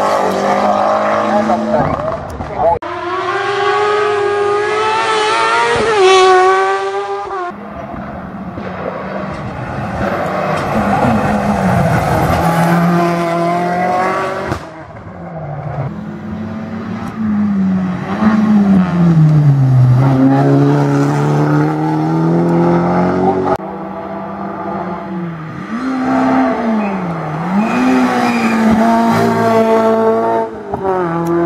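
Competition rally cars driven hard up a twisting mountain road, one after another, their engines revving high, dropping off into the bends and climbing again as they accelerate out.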